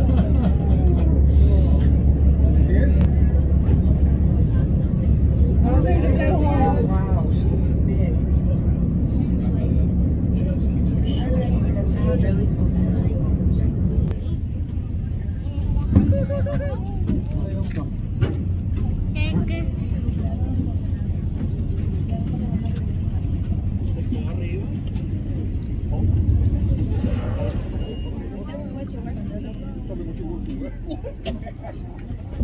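A boat's engine droning steadily, dropping to a slightly lower, quieter note about halfway through, with people's voices coming in now and then.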